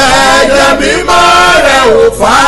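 A man's voice chanting a worship song in short sung phrases, breaking off briefly about a second in and again near the end.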